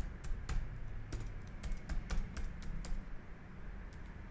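Computer keyboard typing: a quick, uneven run of about a dozen key clicks, stopping about three seconds in.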